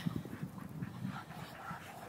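A dog panting softly.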